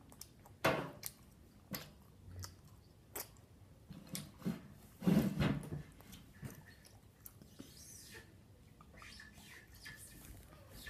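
Close mouth sounds of a person chewing gumballs with sips of water: scattered wet clicks and smacks, the loudest a short burst about five seconds in.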